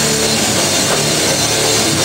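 A rock band playing loud and live, drum kit pounding under a riff of short repeating low notes.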